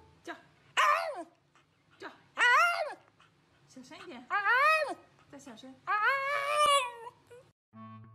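A black-and-tan Shiba Inu whining in four drawn-out calls about two seconds apart. Each call rises and then falls in pitch, and the last is the longest.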